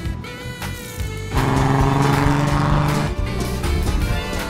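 Background music; about a second and a half in, the sound of a race car speeding past cuts in loudly over it for about two seconds, then the music carries on.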